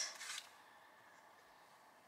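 Faint rustle of cardstock die-cut pieces being handled and shuffled in the hands, loudest in the first half second, then almost quiet.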